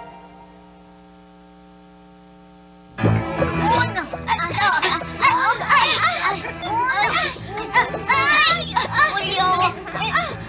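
A faint steady hum for about three seconds, then a chorus of children's voices shouting and cheering all at once, over background music, as the puppet children strain in a tug-of-war.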